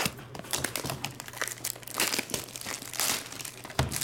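Plastic shrink wrap on a trading card box crinkling and tearing as it is ripped off by hand, in irregular crackly bursts.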